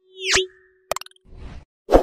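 Sound effects of an animated YouTube subscribe graphic: a quick pop with a rising sweep, a held low tone, a clicking rattle about a second in, and a loud sharp hit near the end.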